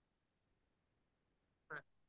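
Near silence, broken once near the end by a very short, faint, pitched vocal blip, like a brief syllable from a person.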